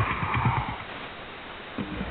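Shortwave radio broadcast received in upper sideband through a software-defined radio, with narrow, hissy audio. A few low knocks in the first half second close out a promo, then a quieter stretch of noise, and music for the next ad starts just before the end.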